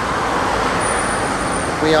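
Steady rushing noise of road traffic passing close by.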